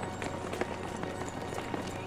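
Footsteps of several runners on an outdoor running track, a scatter of light taps over a steady low hum of outdoor background noise.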